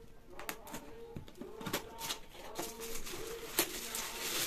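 A bird cooing: short, low, level notes repeated several times. Over it come the clicks and rustles of a cardboard gift box being handled, the sharpest click near the end.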